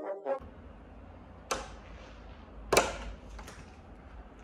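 A few sharp clicks and knocks from an apartment front door's lock and handle as it is unlocked and pushed open. The loudest comes about three-quarters of the way through, over a low steady rumble.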